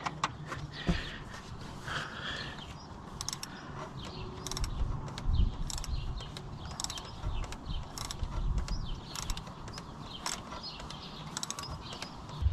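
Oil filter housing cap on a 2014 Chevrolet Equinox's Ecotec engine being screwed down and tightened by hand, with irregular mechanical clicks and creaks from the threads and the tool.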